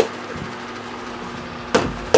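Mini basketball striking an over-the-door hoop and door on a missed shot: a sharp knock right at the start and a louder knock near the end, over a steady low hum.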